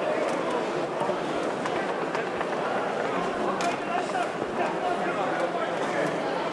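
Indistinct voices of hurlers and onlookers calling out around the pitch over a steady outdoor background.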